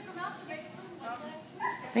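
A dog whimpering: a few short, faint, high rising whines.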